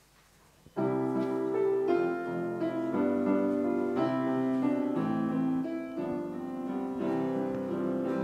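Piano playing the introduction to a Christian song, starting suddenly about a second in and running on in held chords under a melody.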